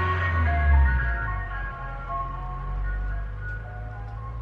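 Ice cream van chimes playing a tune of short notes, over a low rumble that is loudest in the first second.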